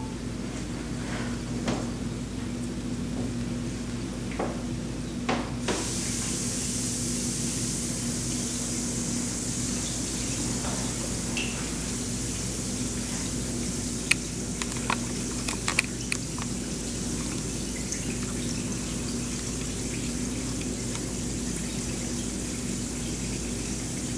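Bath bomb fizzing in a tub of water: a steady high fizz that sets in about six seconds in, after a few small clicks and pops, with scattered pops later on. A low steady hum runs underneath throughout.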